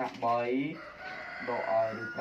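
A man's voice speaking briefly, with a long drawn-out bird call held on one high note behind it that dips slightly near the end.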